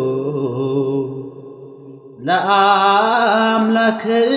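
Chanting in long held notes that slide slowly in pitch. It sinks low in the middle, then a new phrase starts loudly with an upward slide just after the midpoint.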